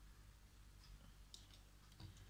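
A few faint clicks of a small plastic cap being worked off a glue bottle, against near silence.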